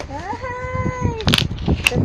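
A single drawn-out, meow-like vocal call that rises at first, then holds its pitch for about a second, followed by two sharp clicks or knocks.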